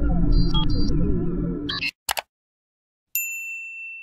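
Intro music with electronic blips that cuts off about two seconds in, followed by a quick double click and, a second later, a single bright notification-bell ding that rings on and fades slowly.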